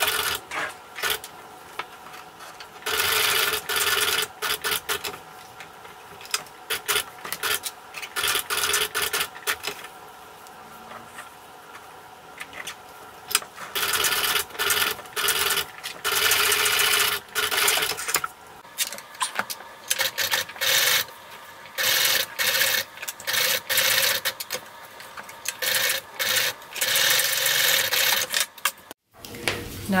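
Bernina sewing machine stitching thin leather in repeated short runs, stopping and starting as the piece is turned around a curved seam.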